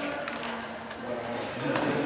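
Indistinct voices of people talking in a large hard-walled room, with a single sharp click near the end.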